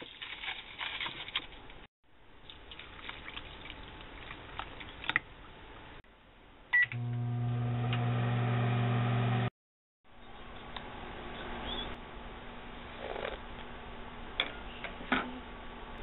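Dry instant miso soup mix being tipped from a packet into a plastic bowl, with rustling and light taps. About seven seconds in comes a short keypad beep, then a microwave oven runs with a steady, loud hum for a few seconds before it is cut off. After that there is a quieter steady hum with a few small clinks.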